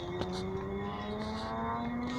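An engine running steadily, its pitch rising slowly and evenly, with one light click about a fifth of a second in.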